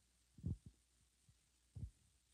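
Near silence broken by two soft, low thumps, one about half a second in and one near the end.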